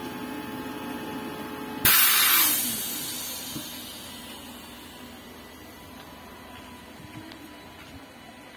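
Škoda 15Tr03/6 trolleybus's on-board air compressor humming steadily, then cutting out about two seconds in with a sharp hiss of compressed air blowing off that fades over about a second. This is typical of the compressor reaching its cut-out pressure. A fainter steady hum remains afterwards.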